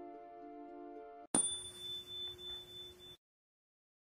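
Soft background music with sustained chords stops, and about a second and a half in a single bright bell-like ding strikes and rings for under two seconds, wavering in level, before it cuts off suddenly.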